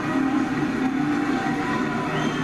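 A low, steady horn sounding over a cheering ballpark crowd, celebrating a two-run home run.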